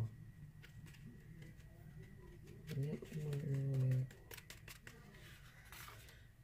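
Faint ticks and rustles of a folded sheet of paper being handled and tapped, with a short murmured voice a little past the middle.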